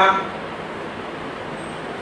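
Steady background hiss in a pause between spoken sentences, even and unchanging, with the tail of a man's voice fading out right at the start.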